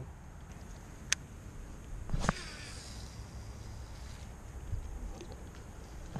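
Fishing rod and baitcasting reel being handled over quiet outdoor ambience: one sharp click about a second in, then a short swish a little past two seconds in, fading within a second.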